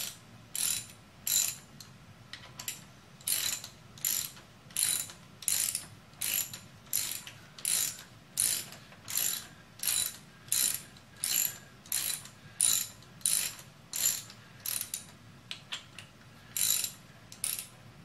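Hand ratchet wrench worked back and forth at the motorcycle's front fork, each stroke a quick run of clicks about once every 0.7 seconds, with a brief lull near the end before the last two strokes. The ratchet is backing out a bolt at the front wheel while the front end is stripped for a fork seal replacement.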